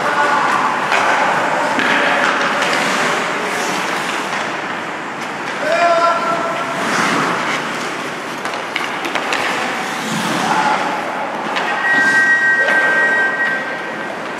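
Ice hockey play on a rink: continuous scraping of skate blades on the ice and stick-and-puck noise, with short shouted calls from players. A steady high tone is held for the last couple of seconds.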